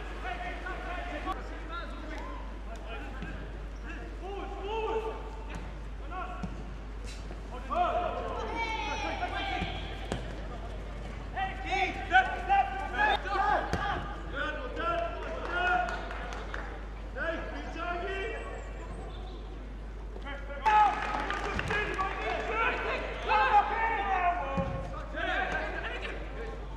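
Live football match sound: indistinct calls and shouts from players and a small crowd, with a few sharp thuds of the ball being kicked.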